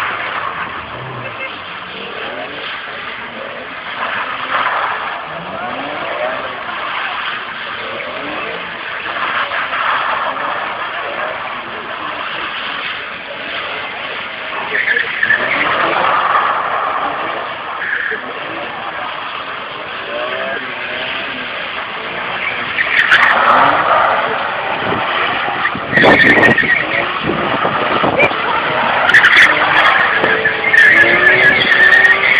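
Car drifting: tyres squealing and the engine revving in repeated surges, growing louder in the last several seconds as a car slides past close by.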